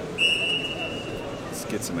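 Wrestling referee's whistle: one steady, shrill blast of about a second that stops the action.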